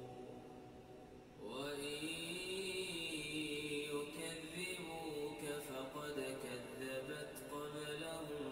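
A man reciting the Qur'an in Arabic in a slow melodic chant, holding and bending long notes. One phrase fades out, and a new one begins about a second and a half in.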